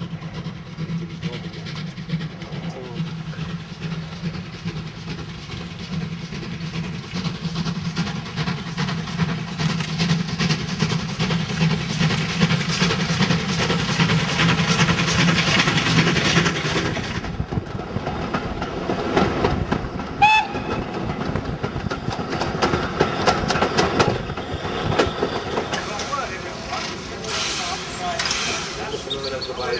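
Steam train passing on the line, growing louder as it nears and peaking about halfway through, with the clatter of carriage wheels over the rail joints. A brief whistle note sounds about two-thirds of the way in.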